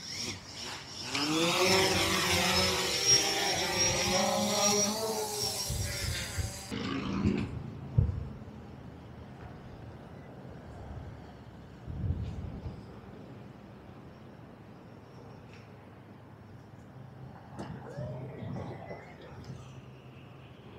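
DJI Phantom 4 quadcopter's four motors spinning up and the drone lifting off: a loud buzzing whine that rises in pitch over the first second or so, then holds with a thin high whine on top, and cuts off abruptly about seven seconds in. After that only faint outdoor background with a couple of dull thumps.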